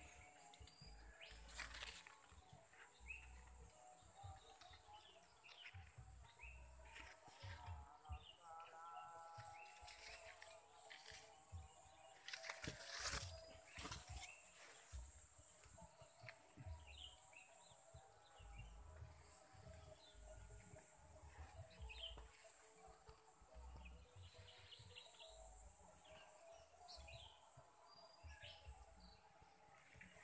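Faint orchard ambience: a steady high-pitched insect drone, with scattered short bird chirps and occasional rustles and low bumps from the camera brushing through leaves and branches.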